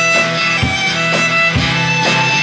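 Live instrumental passage: a violin playing long held notes over strummed acoustic guitar keeping a steady beat of about two strokes a second.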